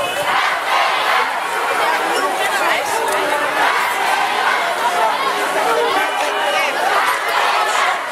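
Street crowd: many voices talking and calling out over one another, loud and unbroken throughout.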